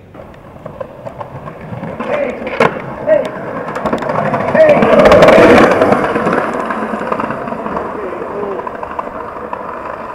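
Skateboard wheels rolling fast over wet, rough pavement. The rolling roar builds to its loudest about halfway through and then fades, with a sharp clack about two and a half seconds in.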